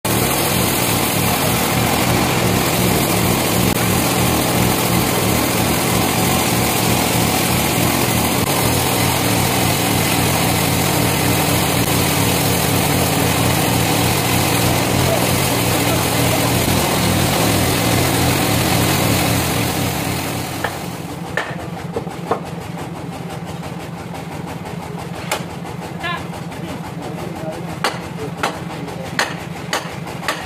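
Bandsaw mill running, loud and steady for about twenty seconds, then dropping to a quieter steady hum with scattered sharp knocks.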